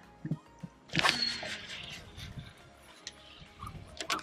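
A long cast on a baitcasting rod and reel. About a second in there is a sudden swish, then the reel's spool spins with a brief high whine as the line pays out, fading over the next second and a half. A sharp click comes near the end.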